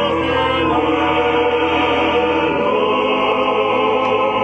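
A choir singing a sacred hymn, with long held notes.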